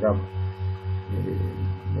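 A low electrical hum that pulses several times a second, with fainter steady higher tones above it, running under a pause in the talk.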